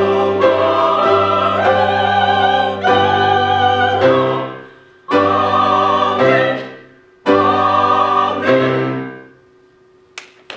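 Mixed church choir with piano accompaniment singing the closing phrases of an anthem. It sings steadily for about four seconds, then holds two separate final chords, each fading out before the next. The last fades away near the end.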